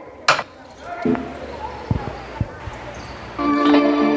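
A basketball bouncing on a hard gym floor, a few separate thuds about half a second apart in the middle, after a sharp crack just after the start. Loud music comes in about three and a half seconds in.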